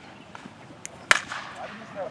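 A baseball bat hitting a pitched ball: one sharp crack about a second in, over faint field background.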